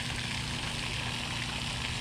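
Steady splashing hiss of a pond aerator fountain spraying water up and falling back onto the pond surface, with a faint steady low hum underneath.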